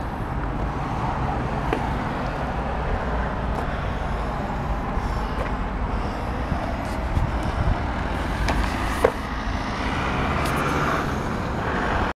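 Road traffic at a street intersection: a steady wash of car noise with low rumble, one vehicle growing louder near the end. A short sharp tick about nine seconds in.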